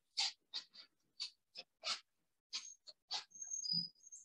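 Movement and handling noises: about a dozen short, irregular rustles and brushes as a person moves about and picks up a wooden staff, with a faint high squeak near the end and a soft low thud just before it ends.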